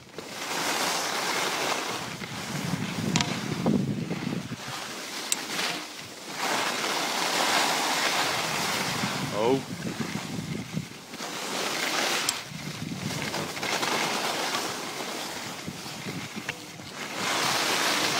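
Skis scraping and carving on hard-packed snow, the noise swelling and fading turn by turn, with wind rushing over the microphone.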